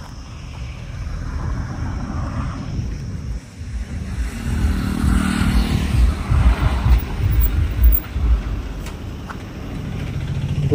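A road vehicle driving past, its engine and tyre noise growing louder to a peak about five to eight seconds in, then fading.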